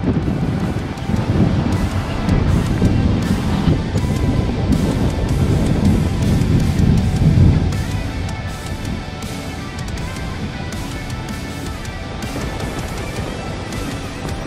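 Background music over heavy wind rumble on the microphone of a car-mounted camera while the car drives, with the wind rumble loudest in the first half and easing after about eight seconds.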